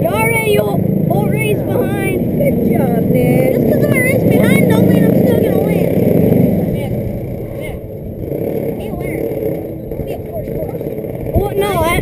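Racing kart engine idling steadily, with children's voices over it; the engine is louder for the first half and drops back after about six seconds.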